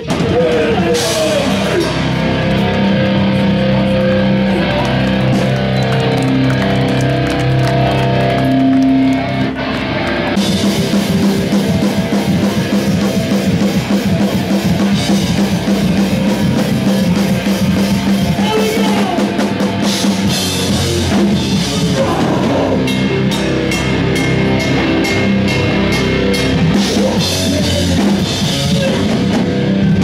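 A live heavy band playing loud drums and electric guitar. For the first ten seconds the guitars hold long notes over sparse drumming, then the full kit comes back in with fast, dense drum and cymbal hits.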